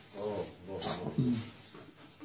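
A pause between chanted phrases of Quran recitation, filled with a few short, faint voice sounds in the first second and a half.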